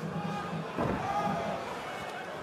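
A heavy thud of a body hitting the cage mat in a takedown from a body lock, about a second in, with the arena crowd shouting around it.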